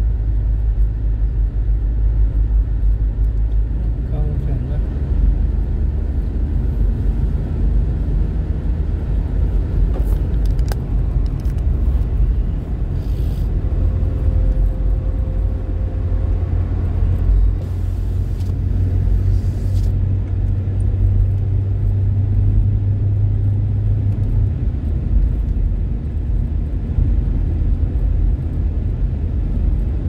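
Steady low rumble of a car's engine and tyres heard from inside the cabin while driving along a paved highway.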